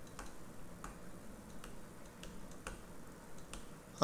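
Faint, irregular clicks, about two a second, of a stylus tapping on a tablet as a word is handwritten.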